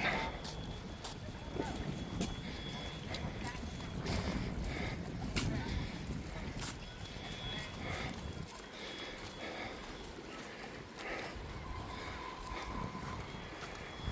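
Wind rumbling on a handheld phone's microphone, with scattered light clicks and footsteps on a paved path; the wind rumble eases about two-thirds of the way through.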